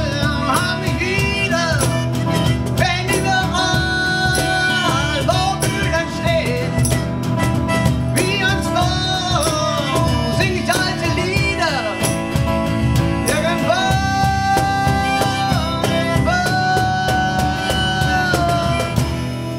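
Live acoustic band music: a strummed steel-string acoustic guitar and hand percussion on bongos, with a harmonica playing a melody of held and bent notes over them.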